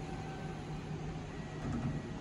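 Steady interior hum of a stationary Kintetsu 22600 series limited-express car: ventilation and on-board equipment running, with faint steady tones over an even hiss and a slight swell near the end.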